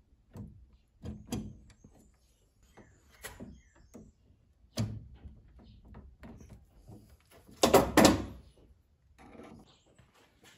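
Hands handling wires and plastic connectors in an inverter's metal wiring compartment: scattered small knocks, clicks and rustles. Two louder, rasping bursts come close together about eight seconds in.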